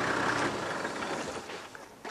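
Toyota Land Cruiser driving slowly on a dirt road and pulling up. Its engine and tyre noise fade away near the end as it comes to a stop.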